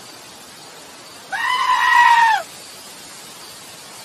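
A black-faced sheep gives one loud, high bleat of about a second, rising in pitch at the start and dropping at the end.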